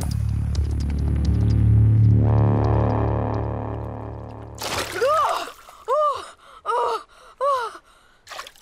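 A low, sustained musical drone that fades away over about five seconds, followed by a boy's voice gasping for breath four times as he comes up out of the water.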